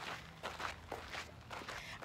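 Footsteps of people walking on a dirt trail, a soft, uneven run of light steps.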